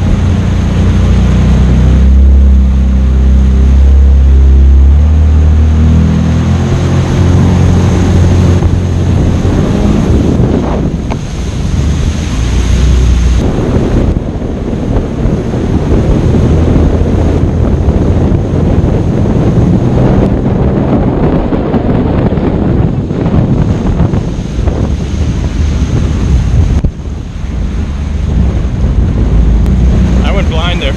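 Jet ski engine running at speed, its low note stepping up and down in the first few seconds. Wind buffets the microphone and water rushes past the hull, with a brief dip in loudness near the end.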